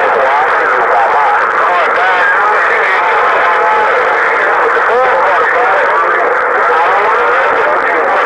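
A distant station's voice coming in over a President HR2510 transceiver's speaker: thin, narrow-band radio speech with noise around it, too unclear to make out words.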